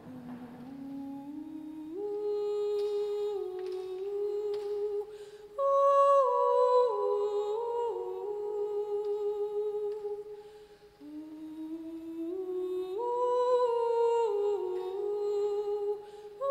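Someone humming a slow, wordless melody in held notes that step up and down, in three phrases with short breaks about five and ten seconds in.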